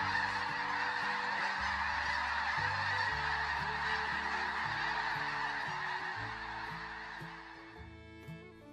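A huge flock of snow geese calling all at once, a dense continuous din of honking that fades away over the last couple of seconds. Soft background music with low notes plays underneath.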